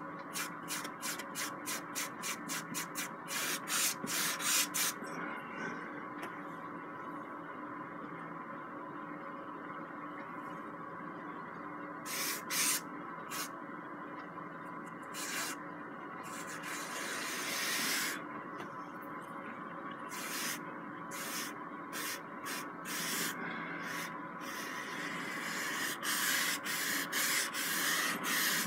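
Paintbrush brushing oil paint across a canvas: a quick run of scratchy back-and-forth strokes, about four a second, at the start, then scattered strokes and one longer drag in the middle, and a run of strokes again near the end.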